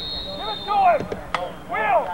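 A referee's whistle blowing one steady high note for a little over a second, with shouting voices around it and a single sharp click shortly after the whistle fades.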